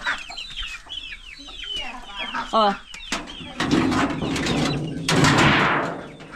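Domestic chickens clucking and calling, with many short, high, falling peeps in the first half. In the second half a louder rough, rustling noise covers the calls.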